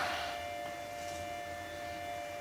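Quiet background music: a single steady held note with no beat.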